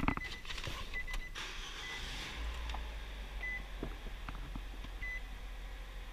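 Nissan Versa's dashboard warning chime giving short high beeps every second or two, heard inside the car with its door open. A low steady rumble sets in about two seconds in.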